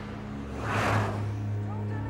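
A rushing whoosh like a vehicle passing, swelling and fading with its peak a little under a second in. A low steady hum comes in partway through.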